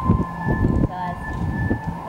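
Indistinct background voices of people talking, over a steady high-pitched tone.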